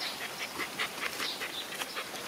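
A quick, irregular run of short, high-pitched animal calls, several a second, over steady outdoor background noise.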